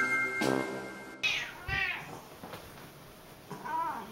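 Jingly background music cuts off about a second in. A domestic cat then meows twice, a longer call followed by a shorter one near the end.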